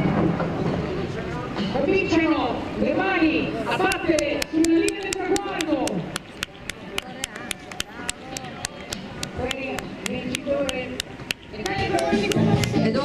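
Voices shouting and cheering, then fast, evenly paced hand-clapping, about five claps a second, from about four seconds in until just before the end.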